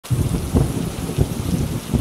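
Thunderstorm: thunder rumbling in irregular low rolls over a steady hiss of heavy rain.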